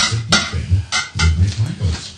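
Metal pry bars clanking against a wheel rim as a tire is levered off by hand: four sharp knocks in two pairs, about a second apart.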